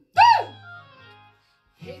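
A voice calls out a loud, short "boo!" that rises then falls in pitch, over a children's song backing track with a low note fading away. After a brief silence the music starts again near the end.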